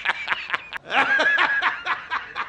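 A man laughing hard and loudly, a cackling laugh broken into rapid pulses, from a film clip used as a reaction meme.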